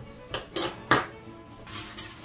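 Three sharp clicks of metal scissors, snipping printed paper and then being set down on a tabletop, the loudest near the end of the first second.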